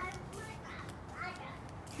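A young child's faint, brief vocal sounds, twice near the middle, over a low background hiss.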